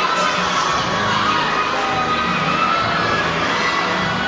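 A crowd of young children shouting and chattering, a steady din of many overlapping high voices in a large gym.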